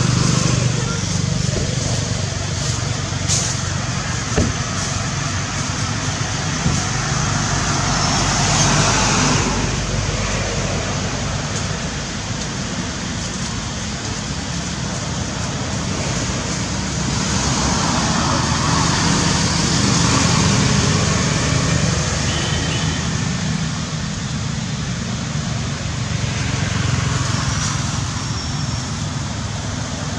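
Steady outdoor road-traffic noise, with a low hum and several swells as vehicles pass.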